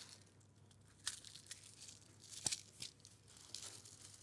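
Faint handling noise: a few soft clicks and rustles as small plastic tubes of seed beads are picked up and handled on the desk.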